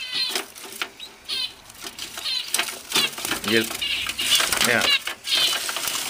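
Zebra finches giving short repeated chirping calls, over sharp rustling of the hay nest and wing flutters as the fledglings scramble out of the nest box.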